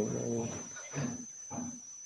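A person's voice over a video call saying "so" and trailing off into a few faint, short vocal sounds, with a steady high-pitched electronic whine underneath.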